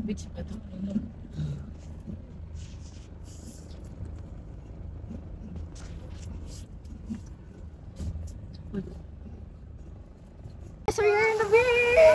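Steady low rumble of a car driving, heard from inside the cabin, with scattered light knocks. Near the end the sound cuts suddenly to a girl laughing loudly.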